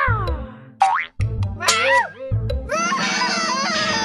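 Cartoon sound effects and a cartoon dog's cry: a sliding sound falling in pitch at the start, a quick rising slide about a second in, then the dog's wavering cry, with bright music coming in about three seconds in.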